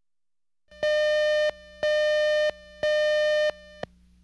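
Electronic cue tone on a video tape's countdown leader: a steady mid-pitched beep pulsed three times, each about two-thirds of a second long and one a second apart, then a short blip that is cut off.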